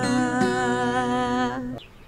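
One long held vocal note with a slight waver in pitch over a ringing acoustic guitar chord, closing a line of a worship song; it fades out about three-quarters of the way through, leaving a short, much quieter pause.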